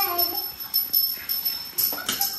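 A small child's high, sing-song voice for the first half second, over the steady high jingle of a small puja bell ringing throughout.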